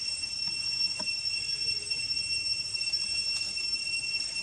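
Insects droning in a steady, high-pitched whine that holds one pitch throughout, with a few faint ticks from the leaf litter.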